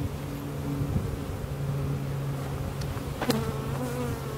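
Honey bees humming from a frame crowded with bees lifted out of an open hive, a steady low drone.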